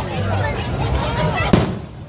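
A single aerial firework shell bursts with one sharp bang about one and a half seconds in, then fades away.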